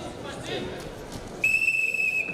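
Referee's whistle: one steady, high blast just under a second long, about a second and a half in, halting the wrestling bout. Arena crowd murmur runs underneath.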